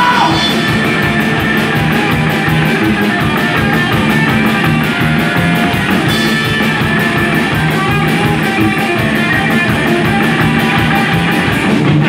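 A live rock trio playing loud and fast: upright double bass, electric hollow-body guitar and a drum kit, with a steady cymbal beat of about five strokes a second. It is an instrumental passage with no vocals.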